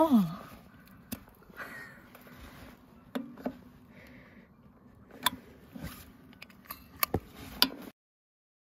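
A hand rummaging inside a small wooden box: scattered sharp taps and knocks, about eight over the few seconds, with a brief falling voice sound at the very start.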